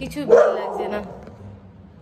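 A dog barks once, loudly, about a third of a second in, and the sound dies away within a second.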